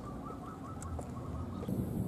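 A bird calling faintly in a repeating, wavering pattern over low outdoor background rumble.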